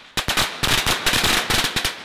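Firecrackers going off in a fast, uneven run of loud bangs that stops abruptly near the end.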